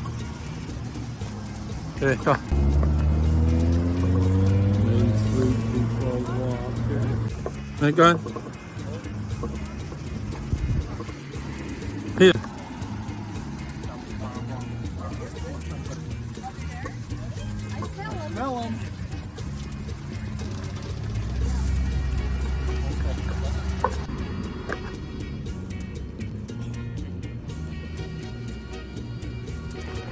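Cars driving past on the road alongside, their engine and tyre noise rising and falling twice: first a few seconds in with an engine note climbing in pitch, then again past the middle.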